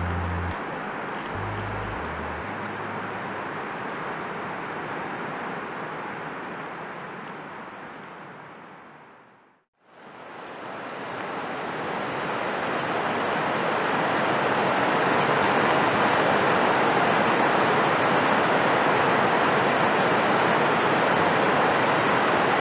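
Whitewater rushing down a rocky cascade: a steady, even rush that fades in from silence about ten seconds in and holds to the end. Before it, the last few bass notes of a beat give way to a fainter rushing hiss that fades out to silence.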